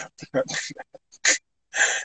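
A man laughing in short breathy gasps, broken by brief pauses.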